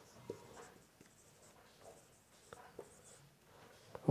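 Marker pen writing on a whiteboard: a few faint, short strokes over near silence.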